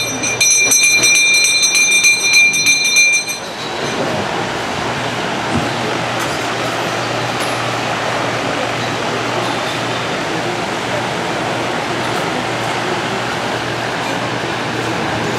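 A metal bell rung rapidly, its bright ringing stopping about three and a half seconds in. After that, a large electric drum fan runs with a steady rushing noise and a low hum.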